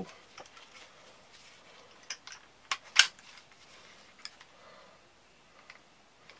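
A few sharp, separate plastic clicks from handling a Kydex knife sheath and its strap fittings. The loudest comes about three seconds in, with quiet rustling in between.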